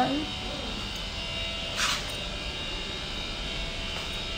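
A steady machine hum with a few high, even whining tones. A short hiss comes about two seconds in.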